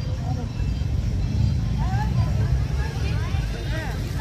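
Busy outdoor square ambience: a steady low rumble, with faint voices of people talking nearby for the second half.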